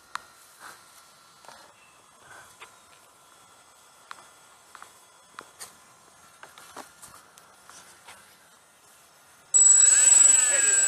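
Faint scattered clicks and knocks, then about half a second before the end the Junkers tri-motor RC model's three E-flite 10-size electric motors start suddenly with a loud, steady high whine.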